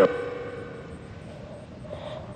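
Necrophonic ghost-box app's output: a short burst right at the start that dies away into a lingering, echoing ring of tones over hiss.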